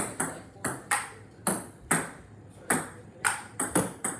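Table tennis rally: the ping-pong ball clicking off paddles and bouncing on the table. There are about ten sharp hits in four seconds, often in quick pairs, each with a short ring.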